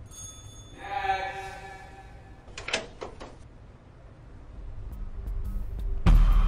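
Advert music and sound effects: a held shimmering tone about a second in, a few quick clicks near the middle, then a low rumble swelling into a loud hit.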